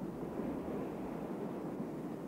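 Steady rushing ambience of wind and sea on an open shore, with no distinct events.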